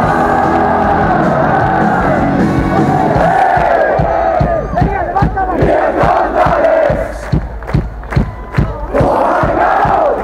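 Large rock-concert crowd singing along loudly with a punk band. About three seconds in the band's bass drops away, and the crowd carries on singing over a steady beat of about three strokes a second.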